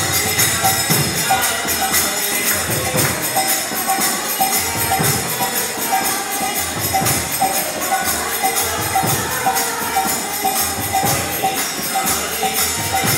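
Kirtan music led by karatalas (small brass hand cymbals) struck in a steady, fast rhythm, with low drum strokes about once a second beneath them.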